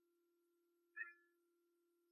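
Near silence: a faint steady hum, with one brief faint sound about a second in.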